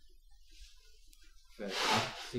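A pause with faint room tone and a few soft low sounds, then a man's voice starts speaking about one and a half seconds in.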